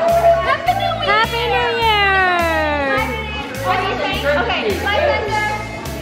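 Music with a steady beat, with party guests shouting and whooping over it. One long, falling whoop comes about a second in.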